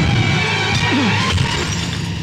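A red flower vase smashing on a floor over film background music.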